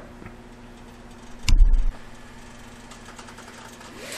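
A steady low hum with a faint hiss over it, and one dull low thump about a second and a half in.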